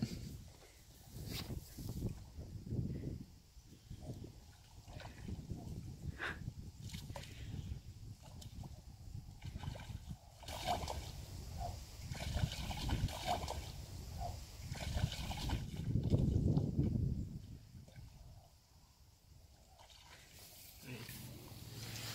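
Wind buffeting the phone's microphone in uneven low gusts, with faint distant voices at times.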